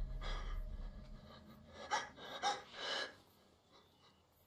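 A woman gasping for breath: about four sharp, breathy gasps, the last three coming quickly one after another. Under them a low rumble fades out in the first second or so.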